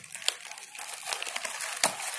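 Plastic packaging bags crinkling as they are handled: a continuous rustle with many small crackles.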